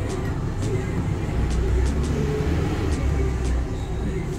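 A steady low rumble of background noise, with faint voices and a few light clicks.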